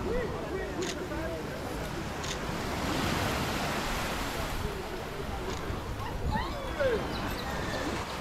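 Steady wind and surf noise on the sea, with indistinct distant voices shouting, most clearly around six to seven seconds in.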